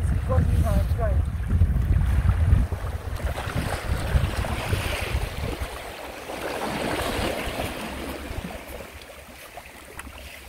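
Small sea waves lapping and washing over shore rocks, with wind buffeting the microphone as a heavy low rumble for the first three seconds; the wash swells in the middle and fades toward the end.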